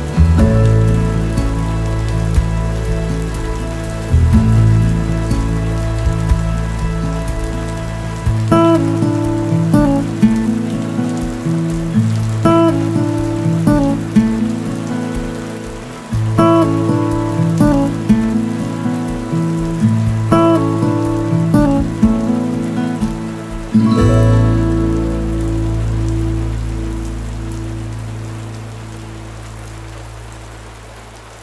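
Steady rain on window glass mixed with slow, soft instrumental music, chords struck every few seconds. Near the end a last chord is left to ring and fades away under the rain.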